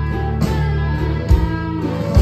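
Live band playing an instrumental stretch of a slow blues-country song: acoustic and electric guitar over held bass notes, with a low hit on the beat about once a second.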